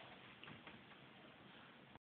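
Near silence: room tone, with two faint soft ticks about half a second in.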